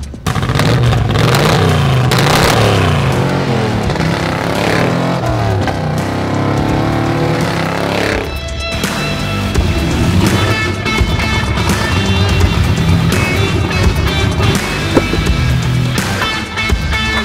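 1975 Ford Bronco's engine revving through its side exhaust, rising and falling in pitch over the first half, then giving way to background music with sustained notes.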